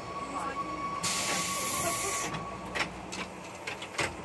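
A burst of compressed air hissing for about a second from a JR West 117 series train's pneumatic system while the train stands still, followed by a sharp click.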